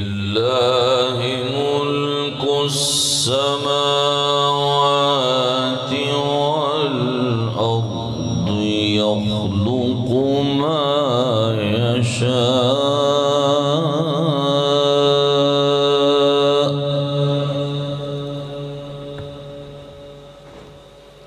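A male qari reciting the Quran in melodic tajweed style: one long ornamented phrase with held notes and wavering pitch, heavy with echo. The voice stops about 17 seconds in and the echo trails off.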